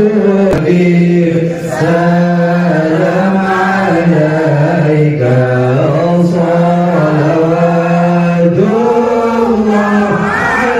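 Group chanting Islamic devotional verses in Arabic in unison during a tawasul prayer, the voices holding long notes that slide up and down between phrases.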